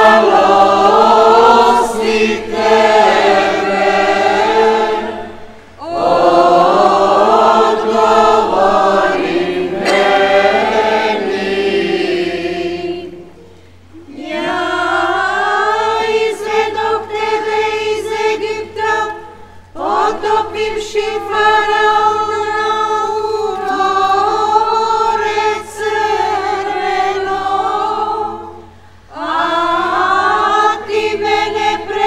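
A choir singing a hymn unaccompanied, in long phrases separated by short pauses.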